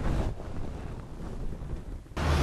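Wind buffeting the microphone: a rough, steady rushing with a louder gust right at the start.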